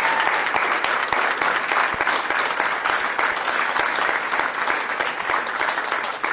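Audience applauding: steady hand clapping from many people.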